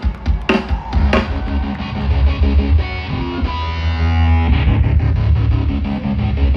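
Live hard rock band playing an instrumental passage: electric guitar and keytar chords over drums and a strong, sustained low end, with a few sharp drum hits in the first second.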